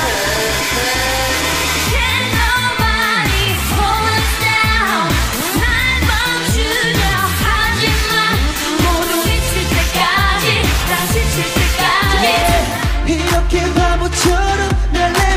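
K-pop song with a sung vocal over a steady beat and bass.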